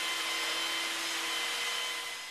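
Steady rushing noise of machinery running on a building site, with a few faint constant high whines.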